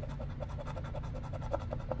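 A coin scraping the coating off a scratch-off lottery ticket in rapid back-and-forth strokes.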